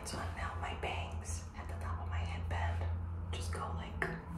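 A woman whispering close to the microphone, the words breathy and hissing, over a steady low hum.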